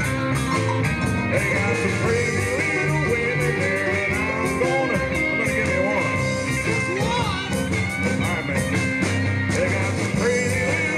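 Live blues band playing an instrumental break: a lead electric guitar line with bent notes over rhythm guitar, bass and drums.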